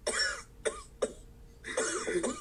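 A woman sobbing: a short voiced sob at the start, two quick catches of breath, then another sob near the end.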